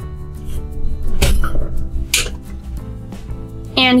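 Plastic plunger of a toy bead-cutting station pressed down to slice a stick into a bead: a sharp knock about a second in and a short, high scraping snap a second later, over steady background music.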